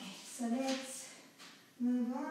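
A woman's voice singing softly in two short phrases, one about half a second in and another at the end.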